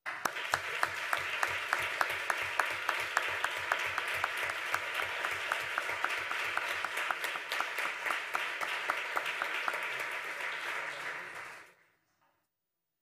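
An audience applauding. One nearby clapper stands out as a steady beat of about four claps a second. The applause dies away near the end.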